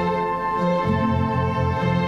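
A school orchestra of violins, flute, electronic keyboards and guitars playing a slow passage: held notes over a bass line that steps from note to note about every half second.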